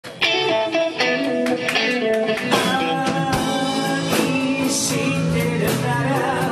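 Live band playing a rock-and-roll ballad, with acoustic and electric guitars and drums. It starts abruptly just after the opening, with chords struck about every three quarters of a second over held notes.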